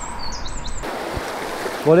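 Birds chirping over a steady outdoor background, then, after an abrupt change about a second in, the steady rush of a shallow river running over stones.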